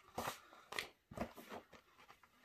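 Pages of a large picture book being turned: a few faint, short paper rustles and flaps.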